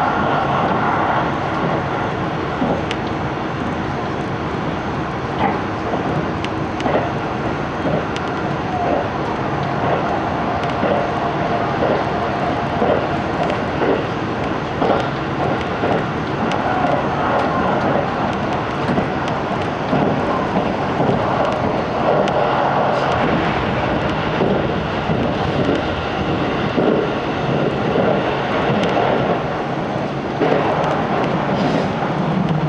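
Steady running noise inside a 373 series electric train at speed: wheels on rail and body rumble through the passenger cabin, with a few short knocks scattered through it.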